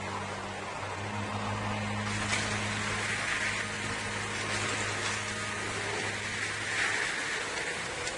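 Blizzard wind blowing as a steady hiss, with a low steady hum underneath that fades out about seven seconds in.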